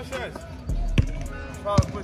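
A basketball bouncing on a concrete outdoor court, with two sharp bounces about a second in and near the end, over background music with a beat.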